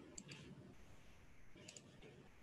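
Faint computer mouse clicks: two quick double-clicks, one just after the start and one near the end, opening a file.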